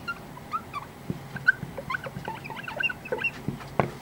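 Faint background animal calls: many short, high chirps scattered through a pause in speech.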